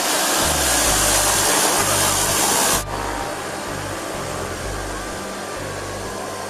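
Loud, even rushing noise of a parked airliner's engines, cut off suddenly about three seconds in, leaving quieter outdoor noise. Background music with a steady bass line plays throughout.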